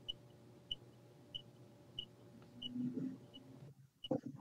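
Faint room tone with a steady low hum and a soft high tick about every two-thirds of a second; a brief low rumble swells up near the end.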